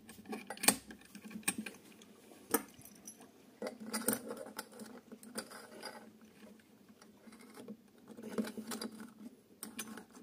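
Faint, scattered clicks and clinks of brass compression fittings and copper pipe being handled and slid together.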